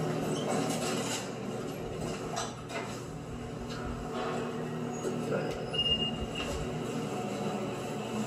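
Elevator car running: a steady mechanical hum and rumble with rattling from the cab, with a short high beep about six seconds in, heard played back through a television's speakers.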